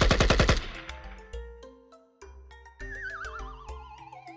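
Automatic-rifle gunfire sound effect, a rapid burst of about a dozen shots a second that stops about half a second in. Light music with short plucked notes follows, and from about three seconds in a wavering tone slides slowly downward.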